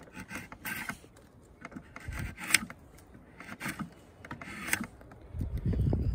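Draw knife shaving the corners off a hard black locust peg blank clamped in a shave horse: about six short scraping strokes, roughly a second apart.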